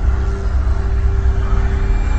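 Horror-film soundtrack drone: a deep, steady rumble with several held tones over it.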